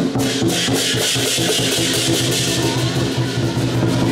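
Chinese lion dance percussion: a large drum beating a steady rhythm with clashing cymbals and gong, the cymbals swelling through the middle.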